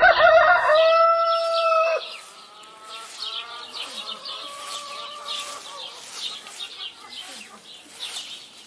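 A rooster crows loudly for about two seconds. A fainter crow and the short chirps of small birds follow behind it.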